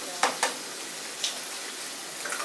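Pancetta sizzling steadily in olive oil in a skillet, with two sharp taps in quick succession near the start and a lighter click about a second later.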